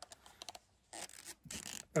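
Soft rustling and scratching with a few small clicks as hearing-protection earmuffs are pulled over the head onto the ears and clothing shifts.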